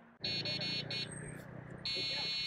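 E-bike's electric horn sounding twice, two steady high-pitched buzzes of under a second each, to warn people ahead.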